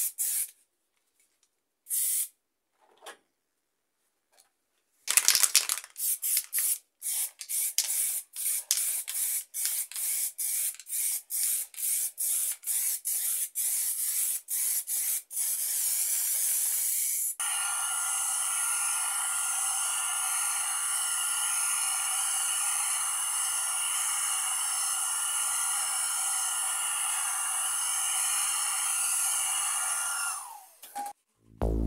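Aerosol spray-paint can hissing: a quick spray at the start, a pause with one brief burst, then a knock about five seconds in followed by many short spray bursts at about two a second, then one long continuous spray through the second half.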